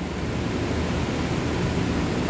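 Steady room noise: a low hum with an even hiss over it, holding level throughout.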